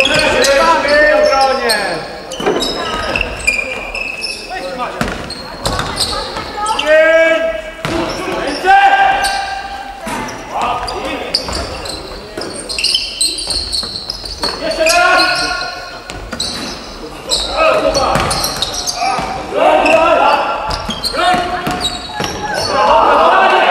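Live basketball game sound in a large gym hall: a ball bouncing on the wooden court, with players' voices calling out on court. The calls come in short bursts and sharp knocks are scattered throughout.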